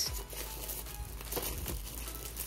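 Thin plastic film sleeve crinkling and rustling as it is slid off a drawing tablet, with a few soft crackles after the middle.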